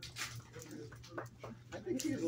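A dog whimpering, with scattered clicks and taps.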